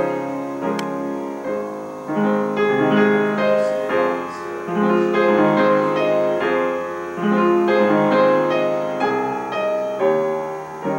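A 1987 Yamaha U10BL upright piano being played: a steady flow of chords and melody notes, many held so they ring into one another. There is a single small click about a second in.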